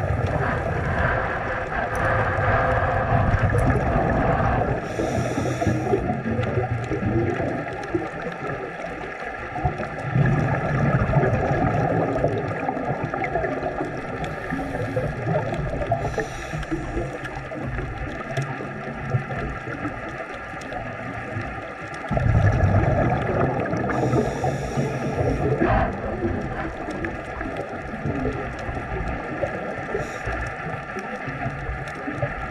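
Scuba diver breathing through a regulator underwater: bursts of exhaled bubbles roughly every ten seconds, with short hissing inhalations between them.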